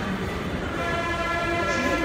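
Metro train horn sounding one long, steady tone, starting about half a second in.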